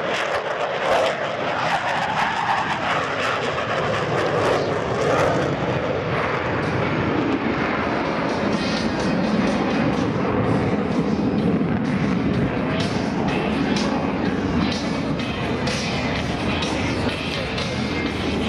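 Dassault Rafale's twin Snecma M88 jet engines running at full power with afterburners lit as the fighter passes and climbs. A loud, continuous jet noise falls in pitch about two to four seconds in as it goes by. Music plays underneath.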